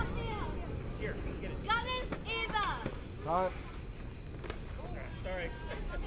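Girls' voices calling and cheering at a distance across a softball field, high-pitched and rising, over a steady high thin trill. A couple of faint clicks sound in the middle.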